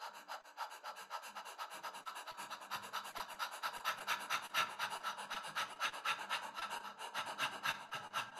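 A man panting rapidly through a wide-open mouth: an even run of short, quick breaths, several a second, growing a little louder. It is a fast mouth-breathing exercise.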